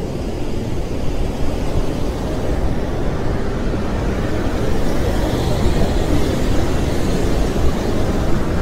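Niagara Falls pouring: a loud, steady rush of falling water, heaviest in the low end.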